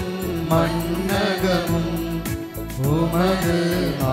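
A church hymn sung to instrumental accompaniment, a gliding sung melody over sustained low notes with a steady percussive beat.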